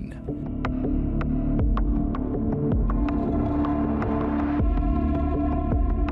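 Background music bed under a news report: a low throbbing pulse under sustained synthesizer chords, with light ticks about twice a second; the chord changes about two-thirds of the way through.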